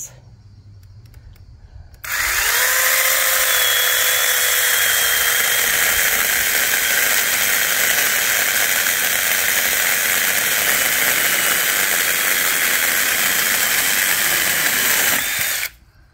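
Sainlogic cordless mini chainsaw with a 6-inch bar and brushless motor spinning up about two seconds in with a quick rising whine, then running steadily as it cuts through a small log. It stops abruptly shortly before the end.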